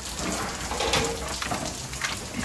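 Rustling and light clatter of climbing ropes and gear being rummaged through in a plastic bucket.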